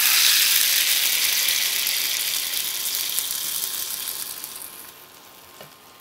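Hot ghee with fried cashews poured from a small frying pan into a pot of wet rice-and-lentil khichuri, sizzling loudly as it hits the liquid. The hiss fades away over about five seconds.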